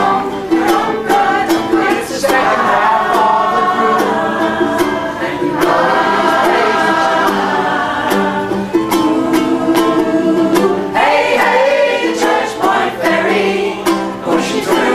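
A small mixed vocal group singing in harmony, accompanied by a steadily strummed ukulele.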